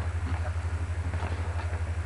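A steady low hum that pulses evenly about twenty times a second, with faint room noise over it.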